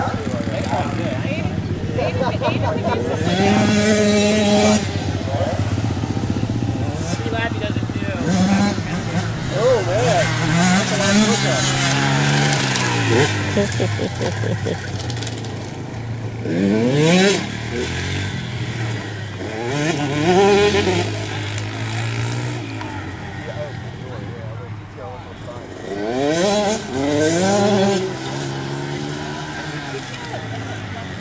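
Engines of several small youth dirt bikes running on a dirt track, revving up and easing off again and again as the riders take the corners.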